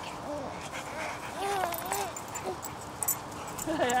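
A large dog whining in a few short, high-pitched whimpers that rise and fall, during play.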